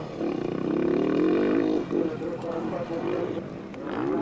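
Enduro motorcycle engine running hard as the bike is ridden across a dirt track, a steady droning tone that fades away after about two seconds.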